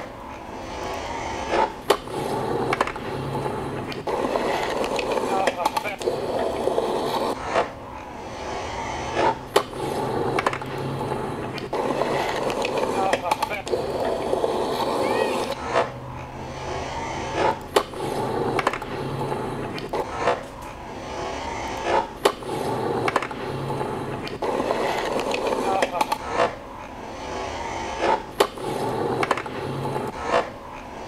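Skateboard clip played back over and over: a sharp skateboard pop or landing clack about every two seconds, over voices and music.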